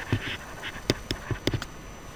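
Stylus writing on a tablet: a few sharp taps with faint scratching over a low background hiss.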